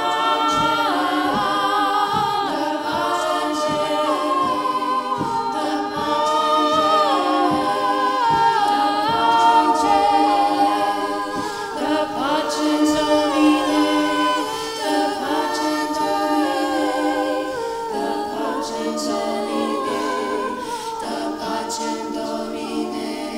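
Women's choir singing a cappella, many voices in layered harmony over a steady held low note. The singing swells in the middle and eases off near the end.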